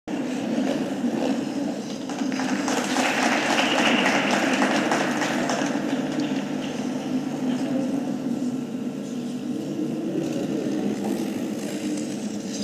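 Ice rink ambience: a steady hum with indistinct voices.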